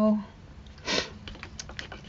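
A short rush of noise about a second in, then a few quick light clicks as a paintbrush is knocked about in a glass jar of paint.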